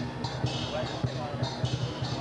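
Traditional Chinese drum and cymbals accompanying a dragon dance: a fast, steady drumbeat of about four to five strokes a second, with cymbals clashing every second or so.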